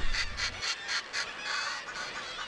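Northern fulmar calling: a rapid run of harsh, cackling notes, about five a second, ending in a longer harsh note near the end.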